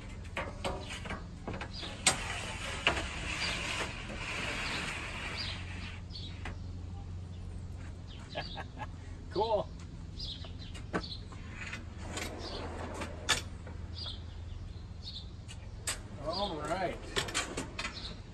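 A thin aluminum sheet being slid across metal drawer slides, with a scraping hiss for a few seconds. Several sharp metallic clanks follow as the sheet is set down and shifted into place.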